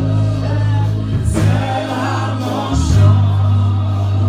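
Gospel music: voices singing together over a deep, steady bass line.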